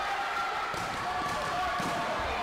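Taekwondo sparring on foam mats: a few dull thuds of feet and kicks landing during an exchange, with voices in the hall behind.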